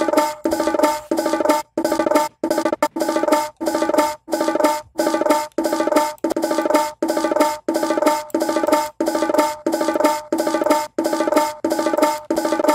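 An isolated bongo layer that Regroover Pro's AI separation pulled out of a sampled drum loop, looped and played through the plugin's gate: a steady rhythm of pitched hits about every 0.6 seconds, each cut off sharply into silence as the gate closes.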